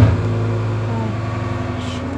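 A loud, steady machine hum, like an electric motor running: a low drone with a buzzing edge that holds unchanged.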